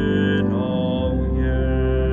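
Sustained organ-like keyboard chords without voice, held steady, the harmony shifting about half a second in and again at about one second: the instrumental close of a hymn accompaniment.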